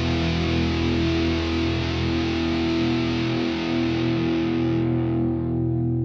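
The final chord of a punk rock song: distorted electric guitars and bass held and left to ring out. It stays steady, then its brightness starts to die away over the last couple of seconds.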